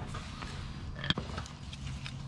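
A worm-drive hose clamp being handled and fitted onto a rubber power steering hose, giving a few light metallic clicks about a second in, over a steady low hum.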